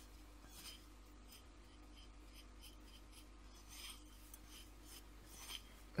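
Fingers mixing a dry ground-seed and oat powder on a plate: faint, irregular rubbing and scraping strokes.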